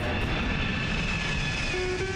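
A steady rushing, rumbling transition sound effect under an animated segment bumper, with a faint high tone sliding slightly down. Near the end a music cue with sustained tones comes in.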